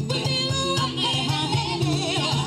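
Several women singing into microphones over upbeat band music with a steady, evenly pulsing bass beat; the sung lines waver and slide in pitch.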